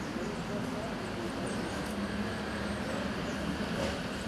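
Steady outdoor background noise: an even low rumble with a faint hum, with no distinct event.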